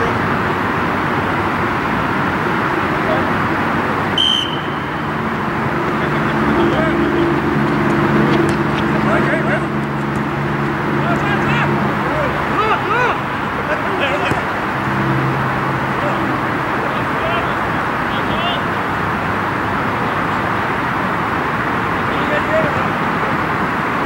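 Outdoor ambience of an amateur soccer match: a steady background roar with scattered distant shouts from players. A brief high whistle sounds about four seconds in. A low droning hum runs from about five to twelve seconds in and comes back briefly a few seconds later.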